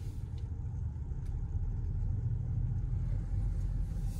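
Low, steady rumble of a Kia car rolling slowly, heard from inside the cabin: engine and tyre noise with no other distinct events.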